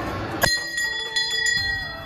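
Hanging brass temple bell rung by hand with its clapper. The first strike comes about half a second in, followed by a few more strikes, and its high tone rings on between them.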